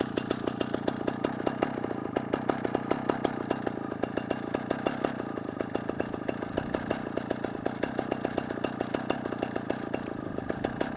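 Vintage early-1980s Husqvarna L65 chainsaw's single-cylinder two-stroke engine idling steadily, with an even, rapid pulsing beat.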